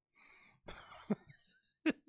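A person's short breathy, throaty vocal sounds: a couple of quick bursts about a second in and a brief voiced sound near the end.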